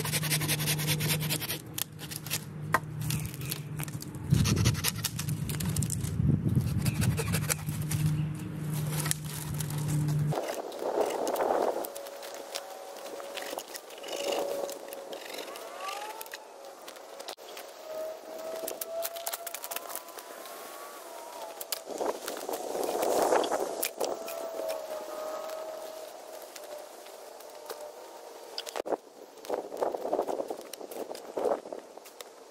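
Hand-tool brush work: branches snapped and cut, with sharp cracks and clicks, and brush scraping and rustling as it is dragged and piled onto a hugel bed. A steady low hum under the first part cuts off suddenly about ten seconds in.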